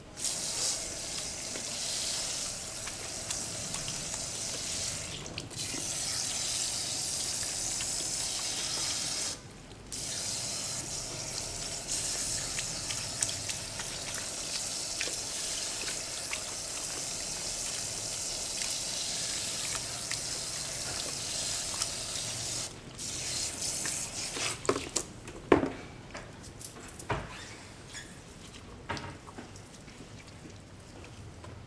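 Handheld shower sprayer rinsing hair into a salon shampoo basin: a steady spray of water with a short break about nine seconds in, shutting off a little after twenty seconds, followed by a few short clicks and splashes.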